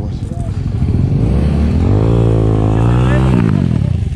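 A motorcycle engine revving: the revs climb for about a second, hold steady, then cut off abruptly about three and a half seconds in.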